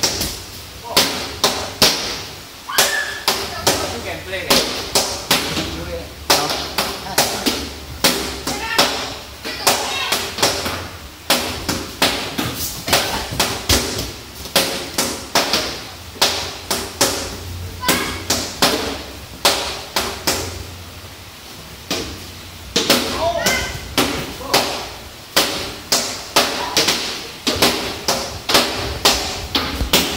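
Sharp slaps and thuds on judo mats, coming irregularly a couple of times a second, mixed with children's voices.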